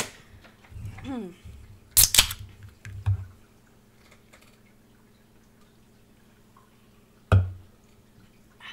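An aluminium soda can of Coca-Cola cracked open about two seconds in: a sharp pop with a short hiss. A throat-clear comes just before it, and a single thump follows near the end.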